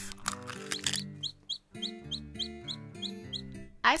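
Baby chick peeping: a run of short, high, rising peeps, about three a second, starting about a second in, over soft guitar background music.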